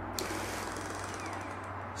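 Viper Mini pretreatment machine's wheel motor running at 100% speed, a steady whir, with a short click shortly after it starts.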